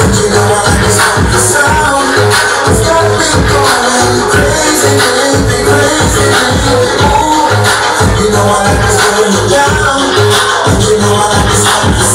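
Loud dance music played over a club sound system, with a steady bass beat and a melody line running over it.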